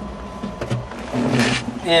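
Steady low engine drone heard from inside the waste recycler's cab, with a man starting to speak near the end.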